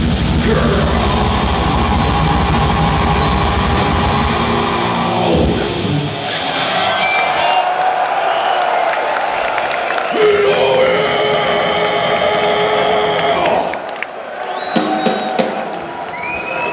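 Death metal band playing live at full volume with drums, bass and distorted electric guitars. About five seconds in the drums and low end stop and held guitar tones ring on, fading out near the end.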